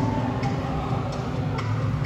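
Background music with a light ticking beat about twice a second over sustained low notes.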